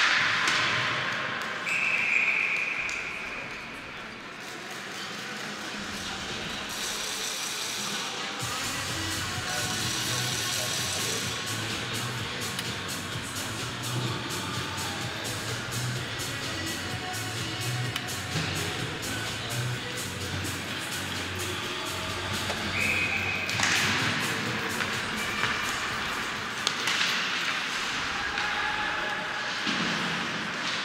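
Ice-rink ambience: a sharp knock at the start, then a referee's whistle blast about two seconds in. Arena music with a steady beat plays over crowd chatter during the stoppage, and a second whistle blast comes about two-thirds of the way through.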